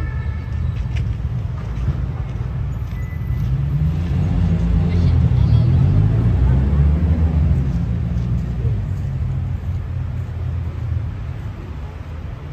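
City street traffic rumble, with a vehicle engine swelling past in the middle, its pitch rising and falling, before easing off.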